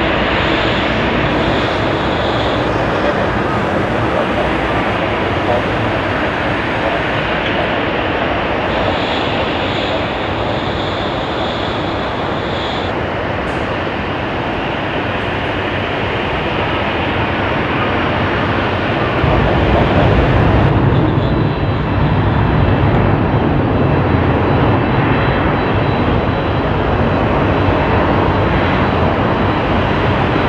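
Jet airliner engines climbing out after takeoff, a steady broad roar from a Japan Airlines Boeing 777. About two-thirds of the way through it changes to a louder, deeper rumble from the next twin-jet, an AIR DO airliner, climbing away.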